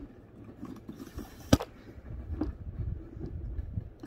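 Handling noise from a phone being fitted onto a tripod: low rubbing and bumping against the microphone, with a sharp click about one and a half seconds in and a softer click about a second later.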